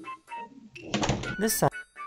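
A brief indistinct voice about a second in, over background music.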